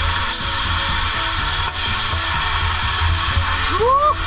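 Water ladled onto the hot stones of a tent-sauna stove (löyly) hissing into steam: a sustained hiss that starts suddenly and stops near the end. Background music runs underneath.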